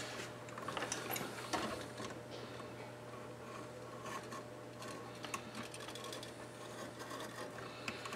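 Faint scraping and small clicks of a hand tool slitting and pulling back the outer sheathing of electrical cable at a switch box, over a steady low hum.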